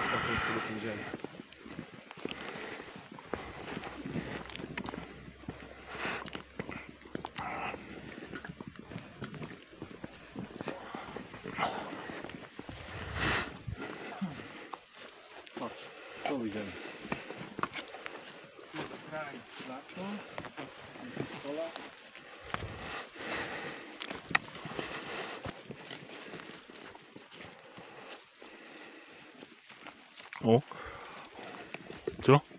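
Footsteps crunching and rustling through dry leaves and undergrowth in an irregular walking rhythm, with faint low voices murmuring now and then.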